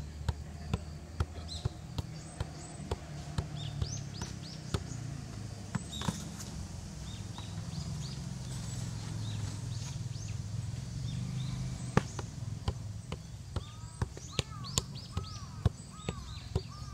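A football tapped again and again off the feet, about two to three light touches a second. The touches stop for several seconds in the middle, where a low steady rumble is heard, and start again after a louder thump. Birds chirp throughout.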